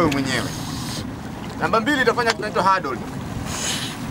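A man speaking in short phrases over the steady low rumble of a boat's motor, with wind on the microphone.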